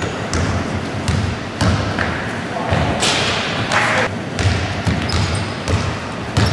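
Basketball dribbled on a wooden gym floor, irregular bounces about twice a second, with a few short high sneaker squeaks and players calling out.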